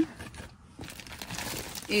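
Clear plastic zip-top bag of paper plates and plastic cutlery crinkling softly and unevenly as it is handled.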